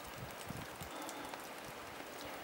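Faint, steady outdoor hiss with a few soft, low thuds and no sharp clicks.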